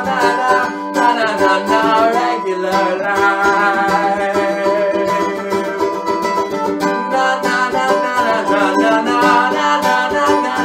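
Mandolin played as an instrumental passage of a song, its notes picked and strummed steadily throughout.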